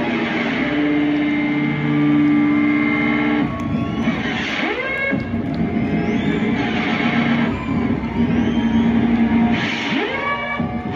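Electric guitars run through effects pedals, making a loud, shapeless wash of feedback and noise with held tones. Swooping pitch sweeps come about halfway through and again near the end, as the end of a rock band's live set.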